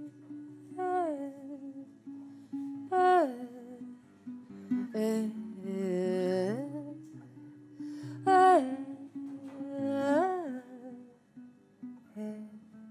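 Acoustic guitar played steadily under a woman's wordless vocalising: five or six held phrases, each rising and then sliding down in pitch, roughly every two seconds.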